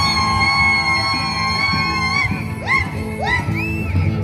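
Andean rural carnival music from a comparsa: a high held note for about two seconds, then three short rising-and-falling calls, over a steady drum beat.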